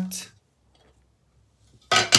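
A hard plastic card case clicking open near the end, a short sharp snap after a quiet stretch.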